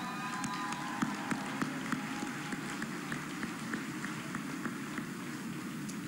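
Audience applause, many hands clapping steadily, with a brief cheer near the start.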